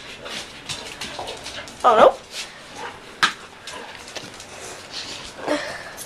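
Pet dogs close to the microphone making small dog sounds, among rubbing and tapping from a finger on the camcorder, with one sharp click a little after three seconds in.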